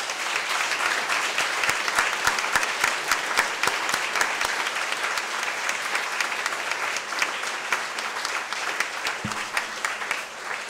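Audience applauding, a dense steady patter of many hands clapping that eases slightly near the end.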